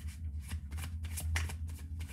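A deck of tarot cards being shuffled by hand, a quick irregular run of card snaps, several a second, over a steady low hum.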